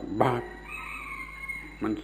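A rooster crows once in the background between a man's words: one long call of about a second, quieter than the voice.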